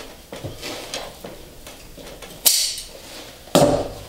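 Side cutters working at the stapled fabric border of an upholstered chair seat: small metal clicks, a short rasping burst about two and a half seconds in, and a thump near the end.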